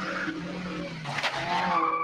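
Ferrari 308 GTS's V8 engine running, with tires squealing near the end.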